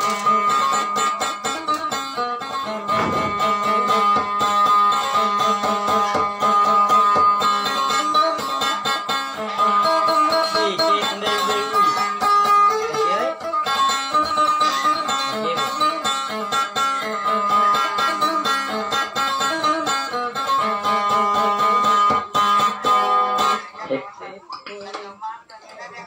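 Acoustic guitar picked quickly in a dense, repeating melody over a steady low drone note, stopping abruptly just before the end.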